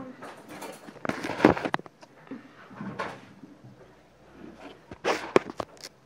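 Handling noise from a hand touching and gripping the phone that is recording: rubbing and sharp knocks close to the microphone, in three bursts, the loudest about a second in and another cluster near the end.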